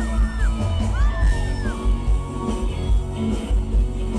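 Live band playing loud through a concert PA, heard from the crowd: electric guitar over pulsing bass and drums. Two long high gliding notes ring out in the first half.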